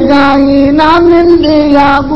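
Kavishri singing: men singing Punjabi verse narrative in a high register, holding long sustained notes, with a quick pitch turn about a second in.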